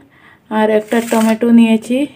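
A person speaking, in short phrases from about half a second in.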